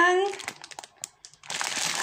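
Thin clear plastic bag crinkling in a hand, a scatter of faint crackles followed by a louder rustle near the end.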